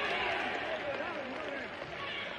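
Stadium crowd noise from a football broadcast, a steady roar of many voices slowly easing off.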